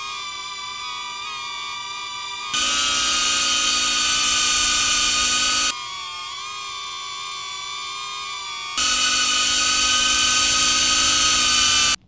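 Rotor whine of two hovering quadcopter drones, played in turn with hard cuts: a DJI Neo's steady, quieter propeller hum, then the much louder, higher-pitched propeller whine of a DJI Avata 1 FPV drone, then the Neo again and the Avata 1 again, about three seconds each.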